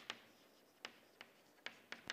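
Chalk writing on a chalkboard: about half a dozen faint, sharp chalk taps, irregularly spaced, as a word is written.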